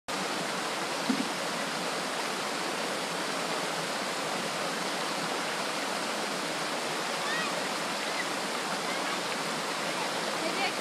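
Steady rush of a forest waterfall and the creek pouring over rocks below it, an even unbroken noise, with one brief bump about a second in.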